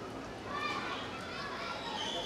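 Faint background voices over a steady hum of room noise, with no loud event.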